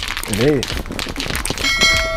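A voice sound about half a second in, followed near the end by a bright electronic ding of several steady tones held together, a notification-bell sound effect.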